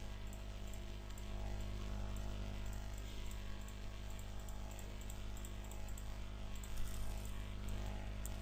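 Steady low electrical hum over a background hiss, the noise floor of a desk recording microphone, with faint ticks now and then.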